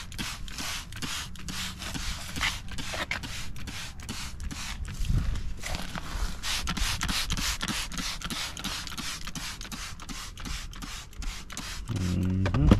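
A microfiber towel rubbing and wiping over a car's interior plastic trim and seat in quick repeated strokes, with short squirts of a trigger spray bottle of cleaner.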